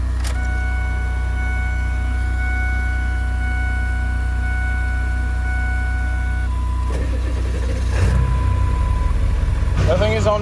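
A diesel pickup truck's ignition is switched on: a steady electronic tone sounds for several seconds over a low hum, then the engine cranks and starts about eight seconds in. This is a test start after a glow plug relay repair, made with the engine warm.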